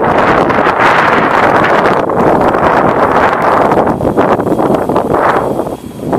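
Wind buffeting the microphone: a loud, steady rushing noise that dips briefly near the end.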